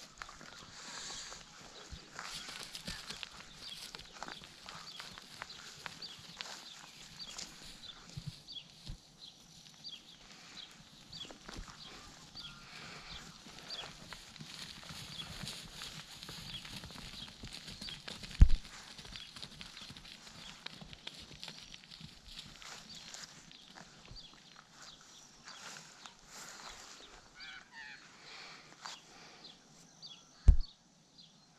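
Soft rustling, crunching and clicking in pasture grass among cattle, with one sharp thump about eighteen seconds in.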